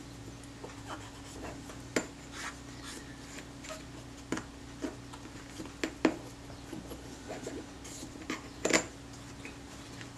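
A small tool scraping and ticking against the inside of a camera's metal lens-mount ring as dried, migrated grease is cleaned out of its grooves: faint rubbing broken by a few sharp little clicks.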